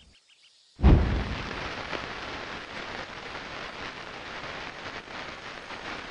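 Fireworks going off: a sudden loud bang about a second in, then continuous crackling and hissing that keeps on steadily.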